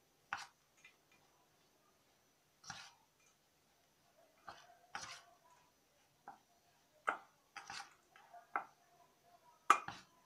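Metal spoon scraping and clinking against a stainless steel bowl while stirring coarsely ground peanuts, in short separate strokes with pauses between them; the loudest clink comes near the end.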